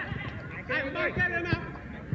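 Men shouting to one another during a football game on a turf pitch, with the sharp thud of a football being kicked about a second and a half in.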